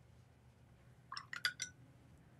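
A short run of four or five light clicks and clinks about a second in, over faint room tone.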